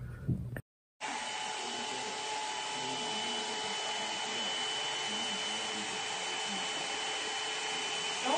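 Hair dryer running steadily, a constant blowing hiss with a faint motor whine, starting about a second in after a brief silence.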